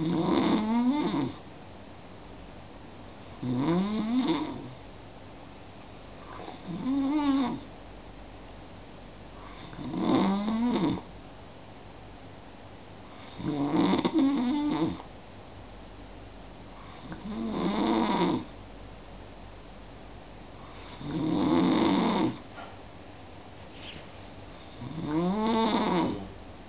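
A sleeper snoring steadily: eight snores, one roughly every three and a half seconds. Each lasts about a second and has a pitch that rises and then falls.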